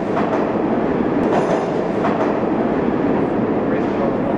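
Subway train running, a loud steady rumble of wheels on rails.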